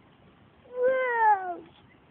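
A toddler's short vocal cry, about a second long, falling in pitch.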